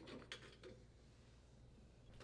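Near silence, with a few faint handling sounds in the first second as the washer's drive motor is lifted off its mounting bracket.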